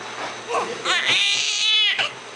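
Newborn baby crying: one long, high-pitched, wavering wail starting about a second in, after a few short fussing sounds.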